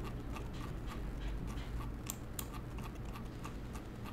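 A series of faint, irregular clicks from a computer mouse's scroll wheel as a graph is zoomed out, over a low steady hum.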